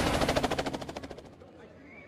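Rapid, even chopping of a helicopter's rotor that fades away over about a second and a half, over the dying tail of crowd cheering.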